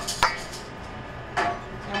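Sharp knock of a utensil or container against a stainless steel mixing bowl about a quarter second in, with a short ring after it. A second, softer clink follows about a second and a half in.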